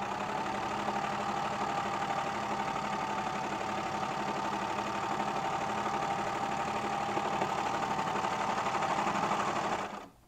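Baby Lock Celebrate serger running at a steady speed, stitching one long continuous seam, and stopping right at the end.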